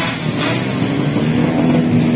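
Drag-bike motorcycle engines running at the start line, a steady, rough engine noise.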